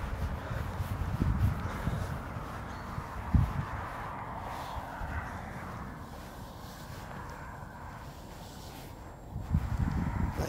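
Footsteps on mown grass: soft, uneven low thuds over a faint steady outdoor hiss, with one louder thud about three and a half seconds in.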